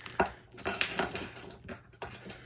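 Handling noise from a diamond-painting canvas under its plastic film: a few light clicks and crinkles, the sharpest about a quarter of a second in.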